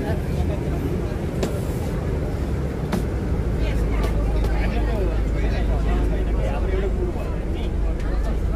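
Steady low rumble of a coach bus heard from inside the passenger cabin, under indistinct talk from passengers, with a few sharp clicks.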